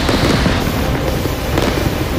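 Dense, continuous crackling and popping of munitions going off in a burning rocket and ammunition depot, with a slightly louder pop about one and a half seconds in. Background music runs underneath.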